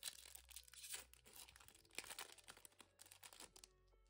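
Foil Pokémon booster pack wrapper being torn open and crinkled by hand, a faint run of crackling and tearing that stops just before the end.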